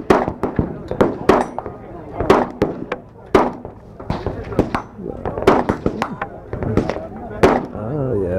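Repeated 9 mm pistol shots from a Caracal USA Enhanced F, sharp reports coming at uneven intervals, roughly two a second.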